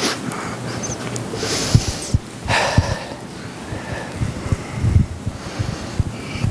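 A man blowing his nose into a tissue close to a microphone: three short rushing blows in the first three seconds, with a few low thumps in between and near the end.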